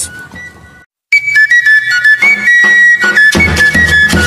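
Background music cuts in abruptly about a second in: a flute melody of held high notes, joined by a steady low beat near the end.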